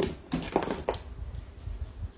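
A few short knocks and rustles of a chunky beaded necklace being handled as it is unfastened and taken off, over low handling noise.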